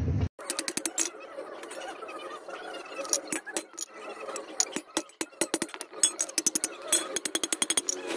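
Hand hammer striking a steel hole punch through a sheet-iron plate on a block anvil: many sharp metallic clinks in irregular runs, quickening to several strikes a second near the end, as rows of holes are punched in the plate.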